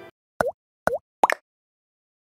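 Three short cartoon bubble-pop sound effects from an animated end screen, each dipping and rising again in pitch, the third a quick double. The last moment of background music cuts off just before them.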